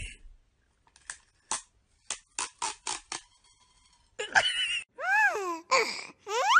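A quick run of about eight short, sharp mechanical clicks, followed by a few cat meows that rise and fall in pitch near the end.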